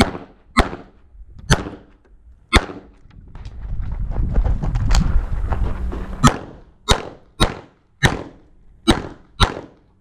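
Pistol shots from a CZ 75 SP-01 9mm, about eleven sharp reports in quick pairs and singles during a timed shooting stage. There is a low rumble of movement in the middle of the run.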